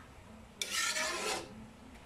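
Metal spatula scraping across the bottom of a wok while stir-frying sliced bottle gourd and corned beef: one rasping scrape of under a second, about halfway through.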